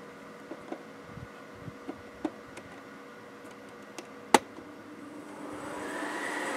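Small induction-motor fan switched on: a sharp click a little past four seconds in, then the motor spins up with a rising whine and rushing air that grows steadily louder. Light handling clicks come before it.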